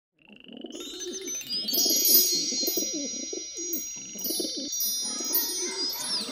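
Wind chimes ringing in long overlapping tones, fading in at the start, with birds calling underneath.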